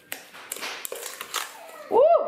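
Silicone spatula stirring a wet chopped cranberry and jalapeño mixture in a stainless steel bowl: soft scraping with several light taps against the metal.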